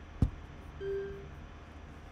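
A single sharp mouse click, then about half a second later one short, steady electronic beep.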